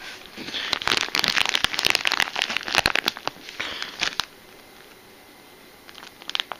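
Clear plastic bag of soft plastic fishing lures crinkling as it is handled. It gives a dense run of crackles that stops about four seconds in.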